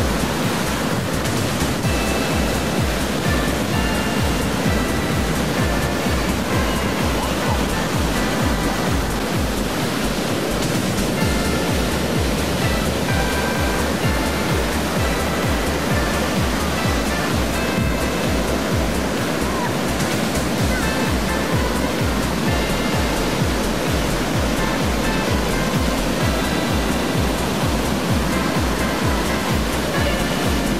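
Baltic Sea surf breaking and washing up the beach in a steady rush, with background music that has a steady low beat laid over it.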